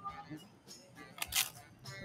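Faint background music, with one short crunch of a tortilla chip being bitten about one and a half seconds in.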